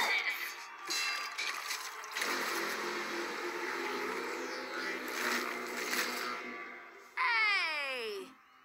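Soundtrack of an animated cartoon: the tail of a pop song, then a dense noisy stretch of music and sound effects. About seven seconds in, a high wailing voice slides down in pitch.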